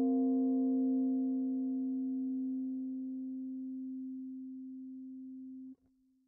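An electric guitar chord, F7sus b9 b5 at the 10th fret, left to ring and slowly fading, then cut off abruptly near the end as the picking hand mutes the strings.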